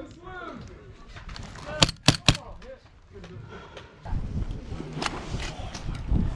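Three quick airsoft pistol shots, sharp cracks about a quarter second apart, about two seconds in.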